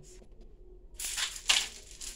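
Rustling, brushing noise of a body moving close to the phone's microphone during an exercise. It starts about a second in and is sharpest about a second and a half in.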